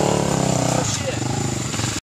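Quad ATV engines idling with a rapid, even putter. A steadier pitched note sits over it for the first second and then drops away.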